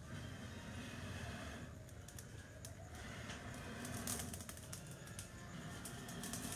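Faint crackling of a charcoal barrel grill cooking ribs, with scattered short pops and clicks from the coals and fat. A couple of low breathy swells come as the coals are blown on to fan them, throwing sparks.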